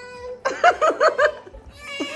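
A young child's high-pitched voice: a held note, then a quick run of about four short rising-and-falling cries, like squealing laughter.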